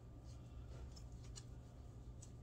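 Quiet, light ticks and faint scraping of a kitchen knife scoring soft bread dough on a silicone pastry mat, over a low steady hum.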